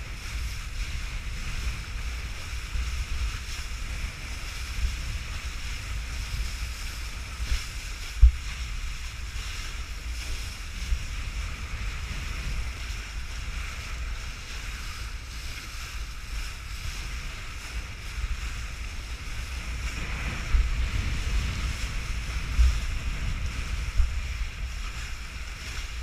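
Wind rushing over the microphone and water hissing under a kiteboard planing across choppy water, with a sharp knock about eight seconds in and a louder stretch of spray from about twenty seconds.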